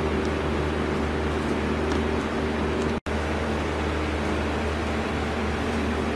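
A steady, low machine hum runs unchanged throughout, with the sound cutting out completely for a split second about halfway through.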